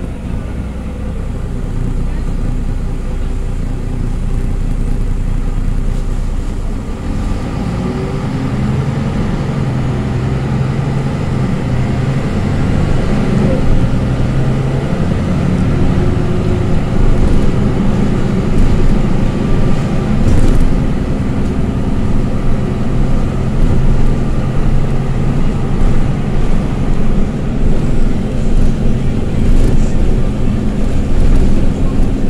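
Interior sound of a MAN NG313 articulated city bus on the move: its MAN D2866 inline-six diesel engine (310 hp) driving through a ZF 5HP592 five-speed automatic gearbox. The sound grows louder about seven seconds in and keeps building.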